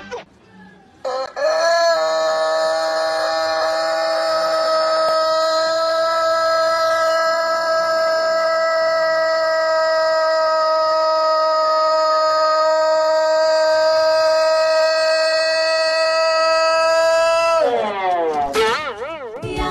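A rooster crowing one very long, unbroken crow: it begins about a second in with a short rising start, holds one steady pitch for some sixteen seconds, and falls away just before the end.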